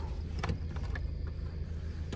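Steady low hum inside a car's cabin, with a soft click about half a second in.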